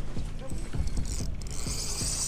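Spinning reel being cranked against a heavy fish on a hard-bent rod, its gears ticking steadily, over a low rumble of wind, with a higher hiss near the end.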